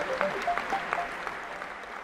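Audience applauding, a room full of people clapping, dying down toward the end.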